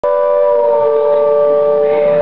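A saxophone holding a long note that sags slightly in pitch about half a second in, over a second steady held note from the band. The sound cuts in abruptly as the recording starts mid-note.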